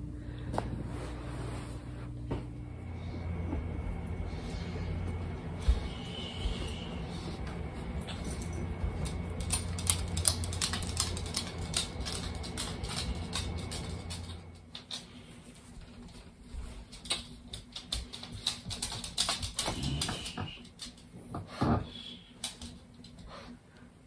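Footsteps and rustling handling noise as a sleeping baby is carried to its bassinet, over a steady low hum that stops about fourteen seconds in. A few louder knocks follow near the end.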